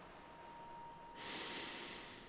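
A person breathing slowly and audibly, one breath starting a little after a second in, with a faint thin steady tone in the first second.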